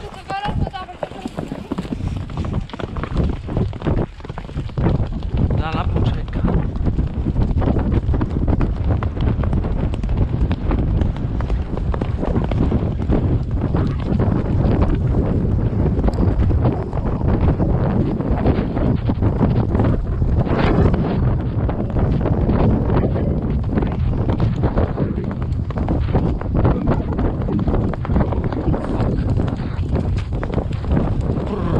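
Wind buffeting the microphone, louder from about four seconds in, over the hoofbeats of horses cantering on a sandy forest track.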